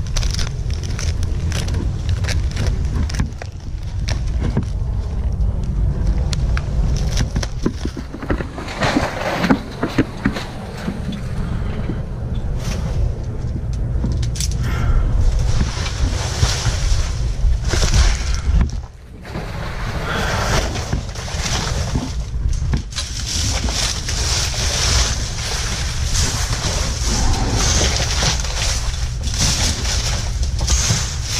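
Wind rumbling on a helmet-camera microphone, with irregular rustling and crunching of dry palm fronds and climbing gear as the climber moves.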